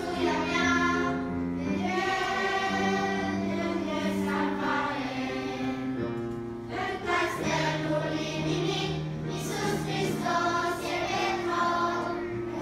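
Children's choir singing with accompaniment, held low notes sustained underneath the voices and changing pitch every few seconds.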